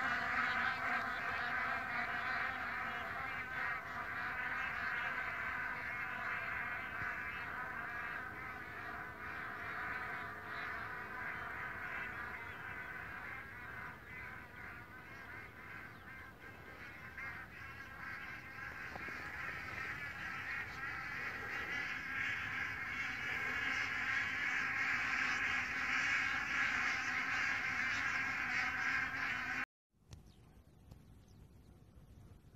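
A large flock of bar-headed geese calling all together in a dense, continuous chorus of honks. It eases off somewhat midway, swells again, and stops suddenly near the end.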